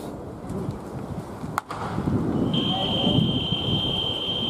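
Murmur of spectators' voices at a ballpark, with one sharp crack of a bat hitting a ball about a second and a half in. From about halfway on, a steady high-pitched tone sounds.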